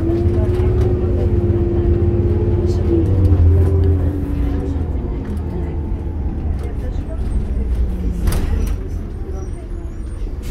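Diesel drivetrain of a 2006 New Flyer D40LF city bus heard from inside the cabin: a loud low hum with a steady whine for the first four seconds, then easing off, with its pitch falling. A short knock about eight seconds in.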